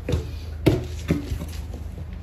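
Four sharp knocks and thumps, the loudest about two thirds of a second in, inside the cargo box of a delivery truck, over a low steady hum.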